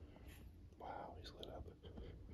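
Quiet whispered speech, words not made out, in short breathy bursts over a low steady hum.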